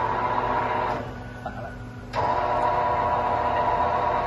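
Motor-driven feeding-unit platform of a carton flexo printer slotter whining as the platform is raised, over the machine's steady low hum. The whine stops about a second in and starts again abruptly about two seconds in.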